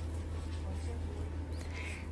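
Quiet room tone: a steady low hum under faint background noise.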